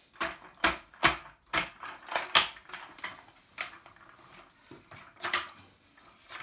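Plastic and chrome-steel parts of a telescopic appliance stand trolley clacking and knocking as it is handled and shifted into place: a run of sharp, irregular clicks, thickest in the first couple of seconds, then two more spaced-out knocks.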